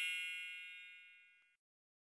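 Bright, bell-like metallic chime ringing out and fading away over the first second and a half.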